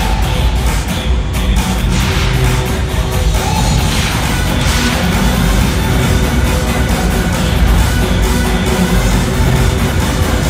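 Loud concert music played through an arena sound system, with a heavy, steady bass beat, heard from among the audience.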